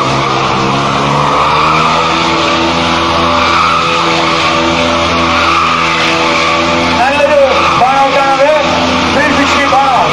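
Sport motorcycle engine held at high, steady revs while the rear tyre spins on concrete in a circling burnout. From about seven seconds in there are repeated rising-and-falling tyre squeals.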